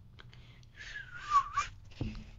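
A short, high, breathy squeak or cry lasting under a second that dips in pitch and then rises again, after a few faint clicks.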